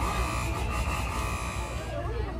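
A steady high buzz, holding one pitch and cutting off just before the end, over faint background chatter.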